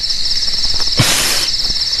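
Crickets chirping steadily in a night ambience, with a short rustling noise about a second in.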